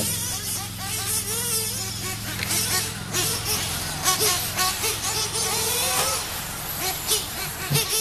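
Radio-controlled truggies, one electric and one nitro-powered, racing on a dirt track: their motors rise and fall in pitch as they accelerate and brake through the turns, with scratchy tire-on-dirt noise, over a steady low hum.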